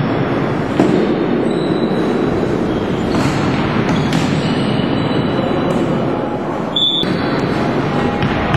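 Loud, dense noise of a floorball game being played in a sports hall, with several sharp knocks and brief high squeaks.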